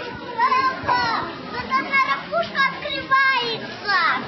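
Small children talking and calling out in high voices, the pitch sliding up and down through short phrases.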